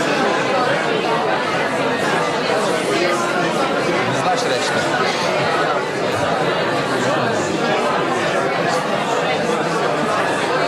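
Many people talking at once in a large hall: a steady babble of overlapping conversations, with no single voice standing out.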